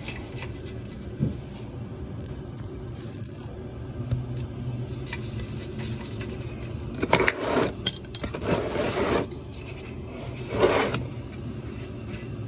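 A steel wrench clicking and scraping on the oil drain plug of a Club Car Precedent's Kawasaki engine as the plug is loosened. The plug is then turned out by hand, with several short scraping and rubbing sounds in the second half, over a steady low hum.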